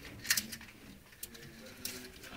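Bearded dragon's claws scratching and clicking against the glass front of its vivarium, in short scratchy strokes, the strongest about a third of a second in and another near the end.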